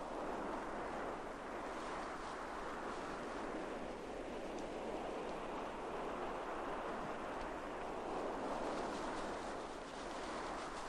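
Steady wind noise rushing over open ground, even and unbroken throughout.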